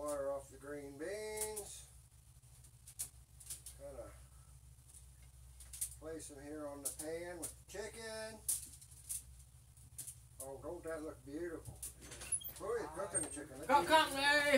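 Brief stretches of indistinct talk, with scattered sharp clicks and knocks of kitchen clatter over a steady low hum.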